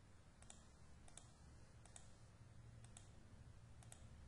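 Five faint computer mouse clicks, each a quick double tick of button press and release, spaced roughly a second apart over near-silent room tone with a low steady hum.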